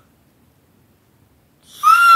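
Near silence, then near the end a woman's short, high-pitched held vocal squeal of delight.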